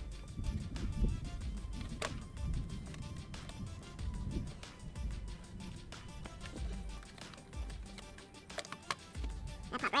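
Background music, with a couple of sharp clicks from parts being handled, one about two seconds in and one near the end.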